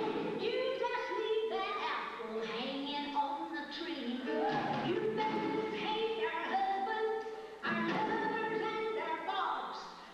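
A woman singing live while strumming an acoustic guitar, holding long notes between short breaks in the phrases.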